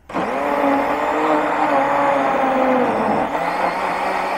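Electric countertop blender running, blending red dragon fruit with fresh and condensed milk. The motor starts abruptly and its hum drops in pitch about three seconds in.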